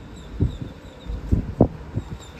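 Gusty wind buffeting the microphone: uneven low rumbling thumps, three stronger ones about half a second, a second and a quarter, and a second and a half in.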